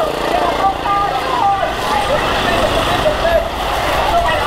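Motorbike engines running as they pass close by on a wet street, with the voices of a roadside crowd over them.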